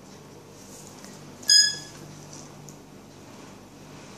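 A single short, high-pitched chirp, about a third of a second long and on one steady pitch, about one and a half seconds in.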